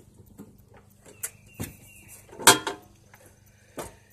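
An old tackle box being handled and opened: a few latch clicks and a short squeak, then a loud clack about two and a half seconds in, and a last knock near the end.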